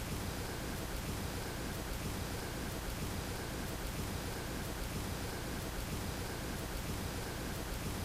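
A steady, even hiss of background noise with no distinct event, and a faint high tone that pulses about once a second.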